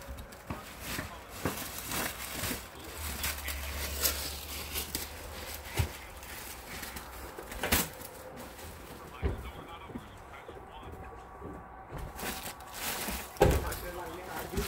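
Scattered rustles and clicks of things being handled close by, with a sharper knock about eight seconds in and a louder one near the end, over faint, indistinct voices.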